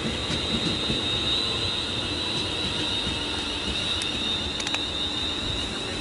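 British Rail Class 350 Desiro electric multiple unit running past, a steady high-pitched whine over the rumble of wheels on track, with a few sharp clicks about four to five seconds in.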